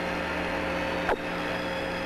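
Open air-to-ground radio channel of the Apollo 11 moonwalk transmission: steady static hiss with a low hum and one short blip about halfway through.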